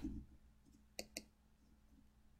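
Two short, sharp computer-mouse clicks about a fifth of a second apart, around a second in, otherwise near silence.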